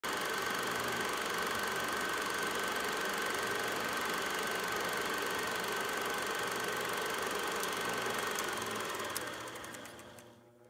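A machine running steadily, engine-like, with a constant high whine over a rough noise, fading out near the end.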